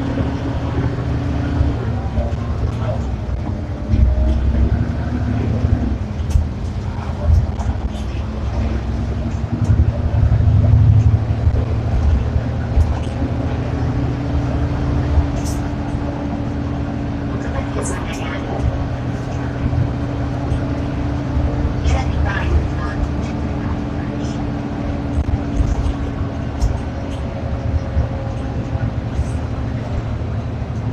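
Inside an Ikarus 435 articulated city bus under way: a steady diesel engine drone and low road rumble, the engine note stepping up and down a few times. Scattered clicks and rattles come from the bus body and fittings, with passengers' voices.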